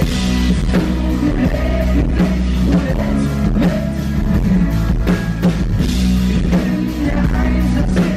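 Live pop-rock band playing: a male lead vocal over electric guitar and a drum kit, heard as an audience recording in the hall.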